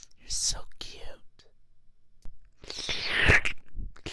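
Close breathy whispering and wet mouth sounds right at one ear of a 3Dio binaural microphone, in two bursts: a shorter one near the start and a louder one past the middle.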